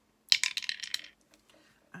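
A six-sided die thrown into a dragon dice holder, clattering in a quick run of hard clicks for about a second before it comes to rest.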